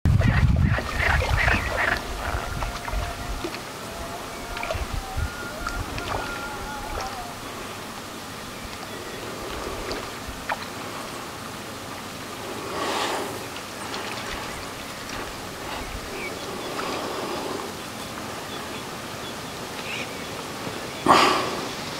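Outdoor lakeside ambience of wind and water, with a strong rumble of wind on the microphone in the first two seconds and a few gusts later.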